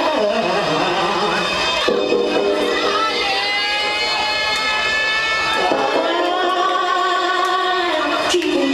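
Electronic dance music played by a DJ through a club's sound system, loud and steady, with held chords that change about two seconds in and again near six seconds.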